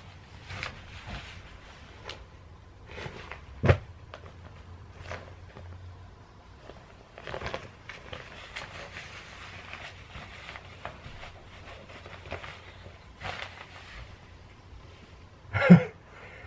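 Rustling and handling of a costume robe, wig and mask being pulled on, with a sharp knock about four seconds in and a brief louder sound near the end.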